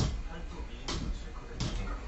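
A loaded barbell's weight plates knocking down on the floor about a second in during a Pendlay row, followed by a forceful breath from the lifter.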